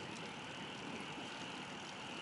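Bicycle being ridden along a road: a steady, fairly faint rolling noise of tyres and drivetrain, with a few faint ticks.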